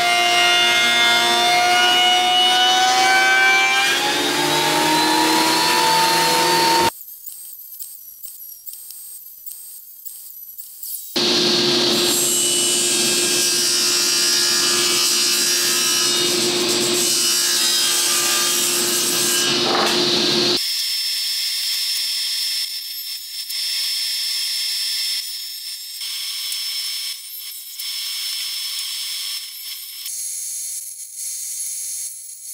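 Benchtop thickness planer planing panels of pallet-wood strips, in two long runs with a quieter gap between them. Near the end a table saw trims a panel, quieter and hissier.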